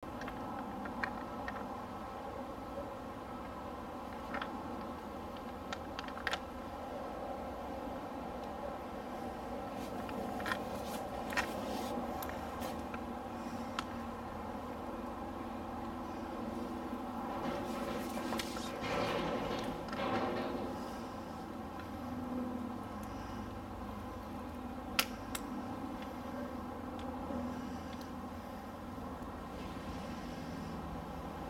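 Scattered light clicks and knocks as a metal Barkbusters handguard clamp and bar are handled and fitted onto a motorcycle handlebar, with a steady background hum throughout.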